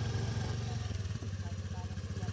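Scooter engine running at low revs, a steady, fast, even pulse.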